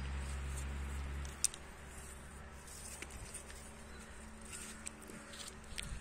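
Outdoor ambience: a steady low hum that cuts off just over a second in, then a single sharp click, then faint scattered ticks over a thin, high insect buzz.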